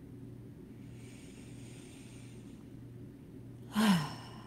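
A woman's quiet breath in, then a short voiced out-breath near the end, a sigh falling in pitch, over a low steady hum.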